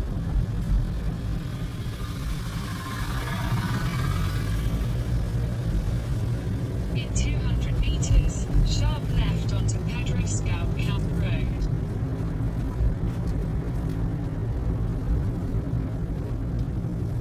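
Car's engine and road noise heard inside the cabin while driving, a steady low rumble. About halfway through comes a few seconds of short, higher-pitched sounds.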